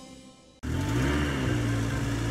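The last note of a children's jingle fades out, then about half a second in a steady truck engine sound starts suddenly and runs evenly, with a slight dip in pitch.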